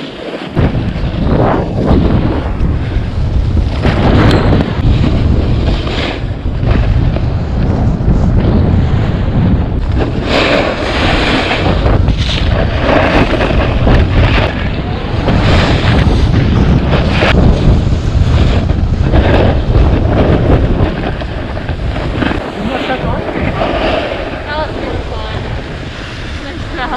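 Wind buffeting the microphone of a fast-moving camera, over a continuous scraping rumble of ski edges sliding on hard-packed snow.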